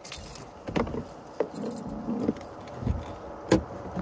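Rattling, clicks and knocks of someone handling things inside a car, with a sharp click about three and a half seconds in.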